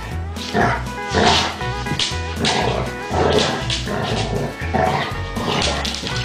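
Background music with a steady, repeating bass line, over which basset hounds growl and bark at play in short bursts about once a second.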